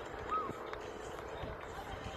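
Faint background voices over a low outdoor hum, with one short high chirp about a third of a second in.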